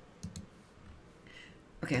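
Two quick computer mouse clicks, about a tenth of a second apart, a quarter of a second in; a woman says "Okay" near the end.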